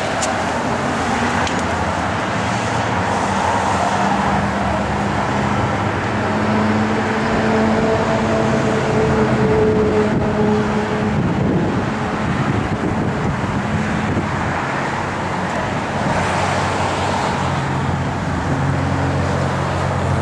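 Steady road traffic noise with a low engine hum throughout, swelling gently now and then.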